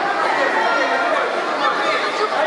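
Many people talking at once, a steady hubbub of overlapping voices filling a large sports hall.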